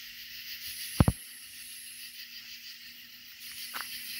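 Outdoor night ambience: a steady high hiss, with a sharp double click about a second in and a fainter tick near the end.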